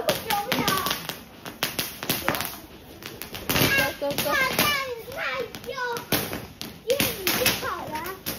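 Small handheld fireworks crackling with rapid, irregular sharp pops, with voices talking over them in the middle and near the end.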